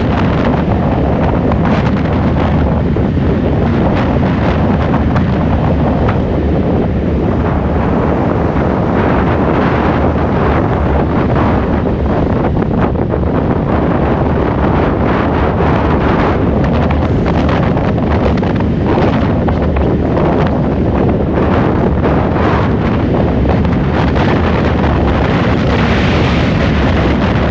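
Steady wind noise buffeting the microphone of a camera mounted on the outside of a moving car, mixed with road noise.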